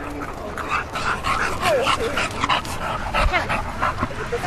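Dogs barking and yipping in short, overlapping calls, some sliding in pitch.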